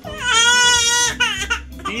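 Baby crying: one long, high-pitched wail lasting about a second, then a short second cry.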